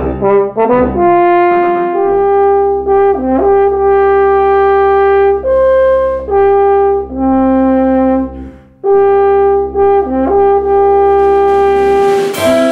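French horn and tuba playing a slow passage of long held notes, the horn's melody moving every second or two over a steady low tuba line, with a short break about nine seconds in.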